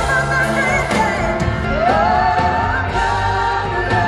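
A singer and live band performing a song, heard from the audience in a large concert hall; about halfway through, a sung note slides upward.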